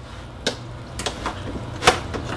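Plastic knocks and clicks as a canister filter is set down into a plastic tote: a few light taps, the loudest one near the end, over a faint low hum.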